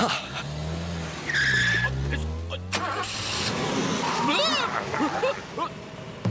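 Cartoon sound effect of a small car's engine revving, its pitch wavering up and down, with a brief tyre screech, mixed with a man's wordless grunts and exclamations.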